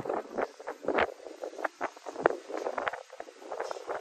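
Footsteps on dry ground while walking: a quick, irregular run of short crunches and clicks.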